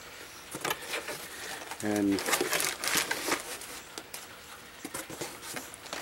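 Parts packaging being handled by hand: irregular crinkling and rustling of plastic and paper wrapping, busiest between about two and three and a half seconds in.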